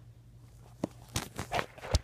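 Handling noise: about five soft knocks and scuffs in the second half, the loudest just before the end, after a quiet start.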